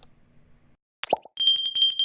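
Subscribe-button animation sound effects: a mouse click, a short pop about a second in, then a small notification bell ringing, a high ding struck rapidly about ten times a second.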